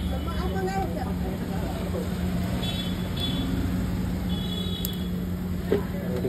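Busy roadside background: a steady traffic hum with faint voices talking nearby. Short high tones come twice, about three seconds in and again about four and a half seconds in.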